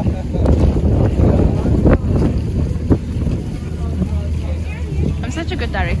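Strong wind buffeting the microphone on the open deck of a sailing catamaran under way: a steady, heavy low rumble. Two brief sharp clicks come about two and three seconds in, and voices start near the end.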